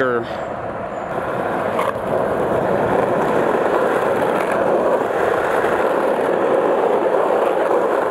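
Skateboard wheels rolling on a paved asphalt trail: a steady rolling rumble that grows louder about two seconds in as the board picks up speed, then holds.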